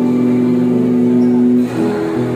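A piano quartet of two violins, cello and keyboard piano playing a slow piece: one low note is held steadily for about a second and a half, then the phrase moves on to new notes near the end.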